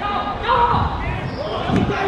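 Boys' voices shouting and calling out on a football pitch, with dull thumps of the football being kicked and played along the turf.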